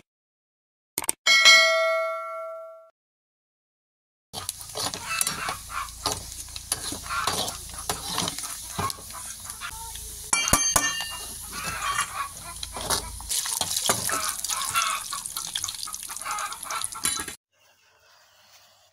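A click and a single bell-like ding from a subscribe-button animation, ringing out over about two seconds. From about four seconds in, diced pieces deep-frying in hot oil in a metal kadai, sizzling steadily, while a slotted metal spoon stirs and scrapes the pan. A few sharp metal clinks come about ten seconds in, and the frying sound cuts off suddenly near the end.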